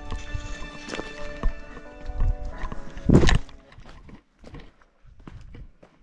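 Footsteps scuffing and knocking on a rocky, gravelly trail, with a heavier knock a little after three seconds in. Steady music-like tones sound underneath and stop about halfway through.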